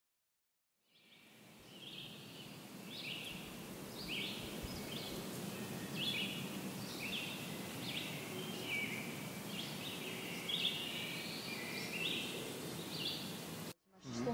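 Outdoor ambience fading in: birds chirping and calling over and over above a steady low background noise. It cuts off suddenly just before the end.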